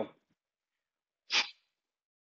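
One short, sharp exhale about a second and a half in: a forceful power breath on a kettlebell swing.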